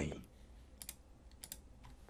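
A few faint clicks from a computer keyboard, spaced irregularly, over quiet room tone.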